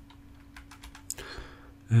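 A short run of faint, light clicks from a computer keyboard, about half a second to a second in, over a low steady electrical hum.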